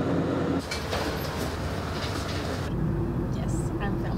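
Steady cabin noise of an airliner in flight. About two and a half seconds in it gives way to the deeper road rumble inside a car.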